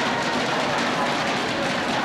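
Live band music with a drum beat, playing at a steady level over a dense, noisy hall background.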